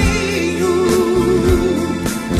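Live sertanejo band music with a lead voice singing, holding one long wavering note with vibrato through the middle of the moment over the accompaniment.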